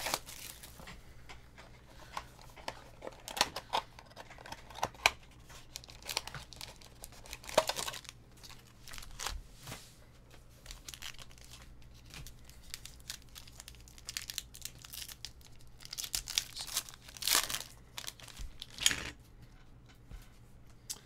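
A Donruss Optic baseball card box and its foil card packs being torn open by hand: scattered tearing and crinkling of the wrapper, with a cluster of louder crinkling near the end.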